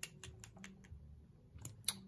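Lips pressed together and parted over fresh, sticky lip gloss, making faint wet smacking clicks: about five quick ones in the first second, then two more near the end.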